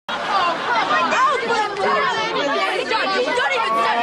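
Several people talking over one another, their voices overlapping into a chatter.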